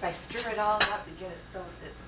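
Brief indistinct speech with a single sharp clink a little under a second in: a utensil knocking against a dish.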